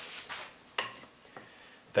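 Short light clacks of wooden top-bar blanks being handled and set in a jig on the saw table, the clearest about three-quarters of a second in and a smaller one a little later; the saw is not heard running.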